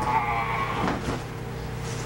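A person's high, wavering vocal cry in the first half second, falling slightly in pitch, followed by a couple of light knocks, over a steady low hum.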